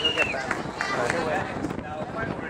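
People talking, with voices as the main sound.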